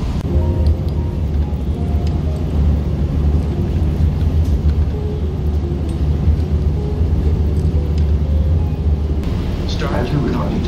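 Low, steady rumble of a city bus's engine and road noise, heard from inside the moving bus.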